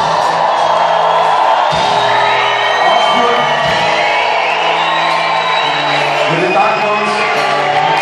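A live band plays a pop-rock song on a concert stage, heard through a crowd recording, with the audience cheering and whooping over the music.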